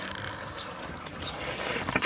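Water from a garden hose running into a campervan's fresh-water tank filler, a steady hiss.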